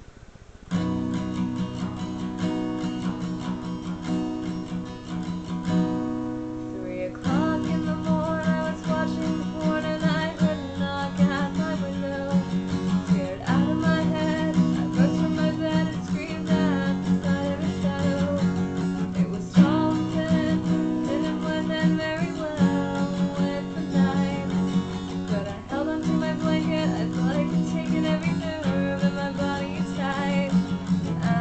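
Acoustic guitar strummed in a steady rhythm, starting about a second in. From about seven seconds in, a woman sings along with it.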